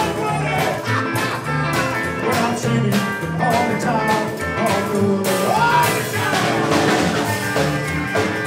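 Rockabilly band playing live: hollow-body electric guitar over upright bass and snare drum, with a steady beat.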